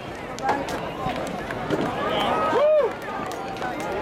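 Chatter of several voices mixed together, with one louder drawn-out call near the middle that rises and falls in pitch.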